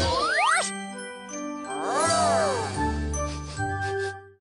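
A short cartoon music jingle with tinkling, chime-like notes and swooping slides in pitch: a quick rise near the start and a rise-and-fall about two seconds in.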